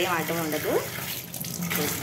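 Tap water running in a steady stream into a stainless steel kitchen sink, splashing onto the drain strainer.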